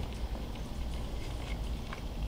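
A person chewing a bite of ribeye steak, with faint scattered wet mouth clicks over a low steady hum.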